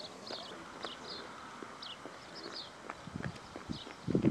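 Footfalls of a group of footballers jogging together on grass, an irregular patter of steps with a few heavier thuds near the end. Birds chirp repeatedly in short falling notes.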